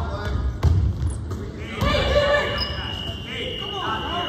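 Basketball bouncing on a hardwood gym floor, with short shouts from players and onlookers echoing in the large hall.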